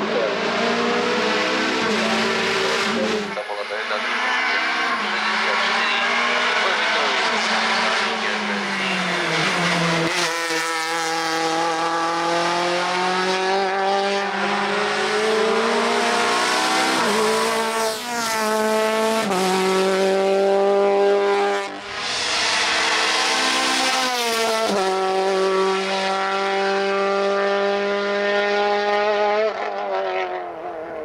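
Škoda Octavia Cup racing car's engine at full throttle on a hill climb, its pitch climbing and then dropping sharply at each upshift, several runs of acceleration one after another.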